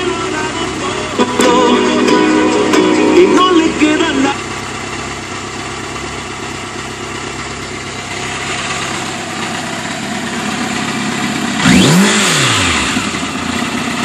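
Music from the motorcycle's stereo plays for about four seconds and then cuts off. The 1996 Kawasaki Voyager XII's V4 engine idles underneath, and near the end it is revved once, the pitch rising and falling back.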